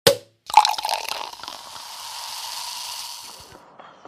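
Editing sound effect over a title card: a sharp hit, then a second hit about half a second in that trails off into a hiss with a faint steady tone, fading out by about three and a half seconds.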